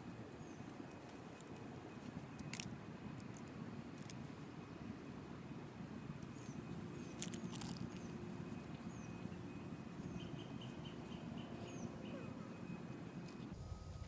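Faint outdoor ambience with short, high bird chirps repeating every second or two, a quick run of high notes about ten seconds in, and a few sharp clicks.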